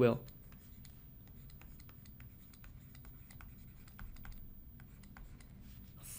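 Faint, irregular clicks and light scratches of a stylus on a drawing tablet as a word is handwritten.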